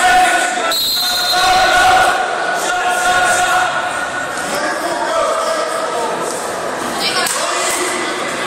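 Coaches and spectators shouting encouragement, the voices echoing in a gymnasium, with thumps of wrestlers hitting the mat.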